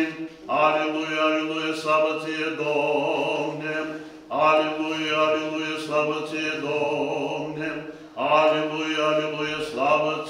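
Orthodox liturgical chanting by a male voice, sung in long held phrases that break near four and eight seconds, over a steady low held note.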